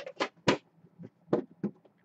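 Several short knocks and taps from empty card-box halves being handled and set down on a table.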